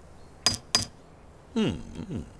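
Two light, high-pitched clinks about a third of a second apart: a cartoon sound effect of a small metal tool tapping a concrete block to test it. A man's short 'Mmm' follows near the end.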